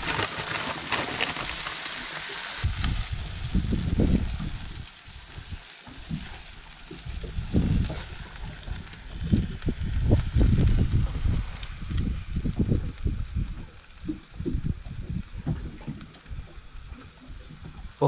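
Nannygai fillets sizzling on a portable gas griddle, loudest for the first couple of seconds and fainter after, under irregular low gusts of wind buffeting the microphone. A few light clicks of a spatula come near the end.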